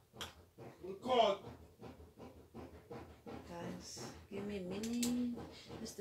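A woman's voice making wordless sounds: a short rising and falling vocal sound about a second in and a held hum that dips and rises near the end. Light clicks and rustles of small plastic parts and cable being handled run underneath.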